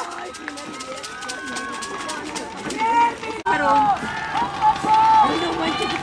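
Several voices of players, coaches and spectators shouting and calling out on an open football field, with no one close to the microphone. The calls are quieter for the first few seconds and get louder from about three seconds in.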